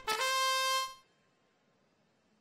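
Electronic match-start horn of a robotics competition field sounding one steady buzzer tone for about a second, signalling the start of the driver-control period, then cutting off.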